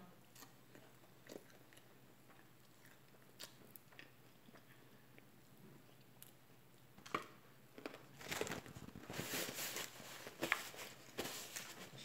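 Faint chewing and small mouth and finger clicks while eating a fried chicken wing and picking meat off the bone. About two-thirds of the way through, a louder crackling rustle of a paper napkin being handled.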